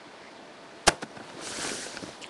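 A single sharp knock about a second in, followed by a short rush of hissing noise.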